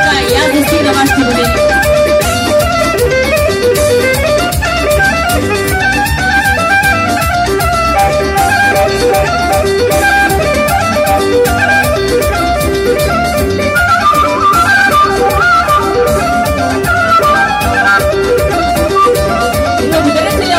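Live Bulgarian folk band playing horo dance music through loudspeakers: a busy instrumental melody over a fast, steady beat.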